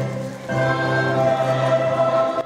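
Church choir singing a hymn in long held chords, with a brief dip about half a second in as a new chord begins.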